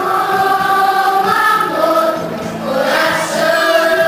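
Children's choir singing, holding long sustained notes that change every second or two.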